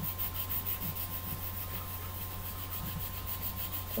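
Fine-grade nail file rubbing over a pencil's graphite lead in quick, even scratchy strokes, several a second, filing the lead to a tapered point.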